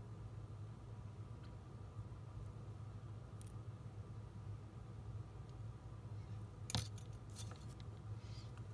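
A steady low hum with a faint click, then about seven seconds in a quick run of small metallic clicks and a jingle: craft scissors with a metal tag charm on a ring being picked up.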